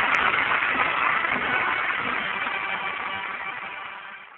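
Live studio audience laughter and applause with the show's band playing a music bridge at the end of a radio comedy sketch, fading out toward the end.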